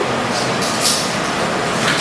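Steady, fairly loud background hiss and rumble of the room recording, with no distinct event standing out.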